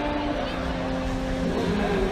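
Stadium crowd chatter mixed with music over the public-address system, its notes held steady.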